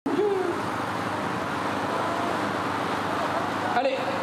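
A steady rushing noise with faint voices mixed in.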